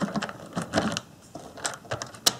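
Bachmann HO-scale Daisy diesel railcar model pushed by hand along the track, its wheels and mechanism giving irregular light clicks and rattles.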